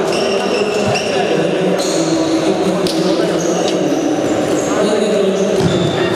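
Sports shoes squeaking on a hall floor, many short high squeaks scattered through, over the echoing chatter of players in a large hall.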